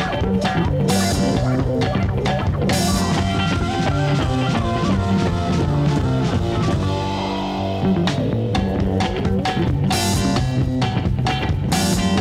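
Late-1960s psychedelic blues-rock band playing an instrumental passage: electric guitar over bass and a drum kit with regular cymbal crashes. Just past the middle the cymbals drop back for a moment while sliding guitar notes carry on, then the full kit comes back in.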